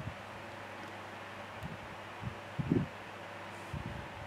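Steady hiss of a room fan, with a few soft low bumps as a small plastic bottle's tip is dabbed against the paper page.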